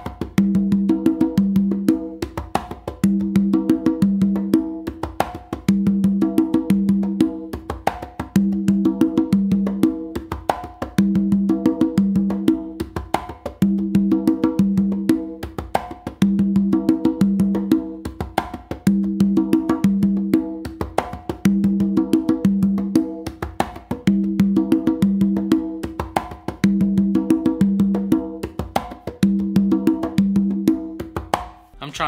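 A tumbao played by hand on three Meinl congas: sharp slaps and muted taps, with open tones ringing out on the lower drums, including the tumba. It is a steady, loud rhythm whose phrase repeats about every two and a half seconds.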